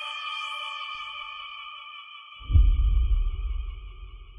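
Dramatic background score: a held synthesizer chord, then a deep bass hit about two and a half seconds in that fades away.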